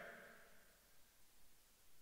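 Near silence: the last trace of a voice dies away at the very start, then nothing.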